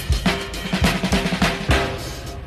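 Drum kit playing a 1930s swing-style beat, drums struck in an even rhythm of about four hits a second.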